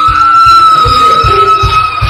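Church band music: a long high note held on the keyboard over a steady kick-drum beat.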